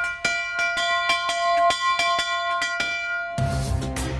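Brass bell on a stand, rung by pulling its rope: a fast run of clangs, about four or five a second, ringing over one another, stopping shortly before the end.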